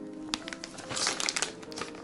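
Plastic bag of shredded cheddar cheese crinkling as it is handled, in a cluster of sharp crackles about a second in, with faint steady background music.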